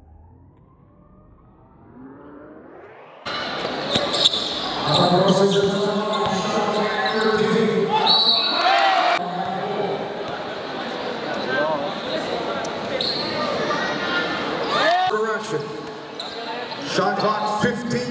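Live indoor basketball game sound in a large gym: the ball bouncing on the court, sneaker squeaks, and shouting from players and the crowd. It opens quietly with a faint rising sweep, and the game sound cuts in loudly about three seconds in.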